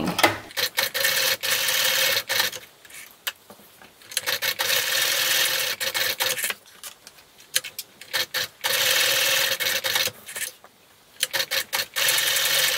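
Electric sewing machine stitching through thin leather with a size 100/16 universal needle, set to a longer stitch length of 3. It runs in three bursts of about two seconds each, with pauses and short stop-start runs between them.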